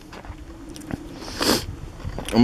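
Mouth noises close to the microphone, ending in a short, sharp intake of breath about one and a half seconds in.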